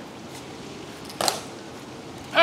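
Quiet outdoor background of a silent crowd, broken by one short, sharp sound a little over a second in.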